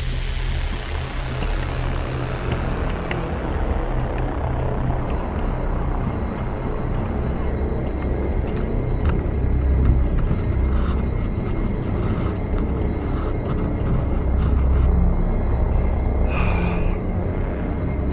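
Film-score music over a steady low rumble, with a rushing noise that fades away over the first few seconds.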